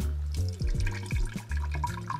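Lime juice streaming and dripping from a hand-held citrus press into an empty glass, under background music with a steady bass line.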